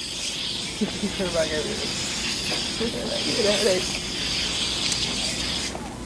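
Axe aerosol body spray being sprayed in one long continuous hiss, cutting off suddenly just before six seconds.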